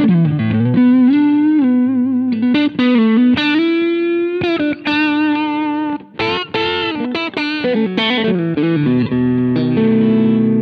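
Electric guitar with single-coil pickups, played through a Vertex Ultraphonix overdrive pedal. It plays a lead line of sustained single notes with string bends and wide vibrato, and ends on a held double-stop.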